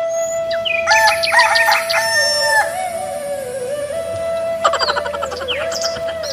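A rooster crowing once, about a second in, over a soft, steady flute melody; a shorter bird call follows near the end.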